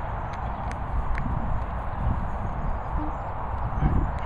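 Footsteps on grass and handling knocks from a hand-held phone being carried while walking, irregular soft thuds over a steady low rumble, the loudest thud near the end.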